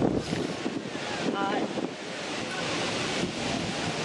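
Wind rumbling on the microphone over the low chatter of a crowd standing close by, with a brief voice about a second and a half in.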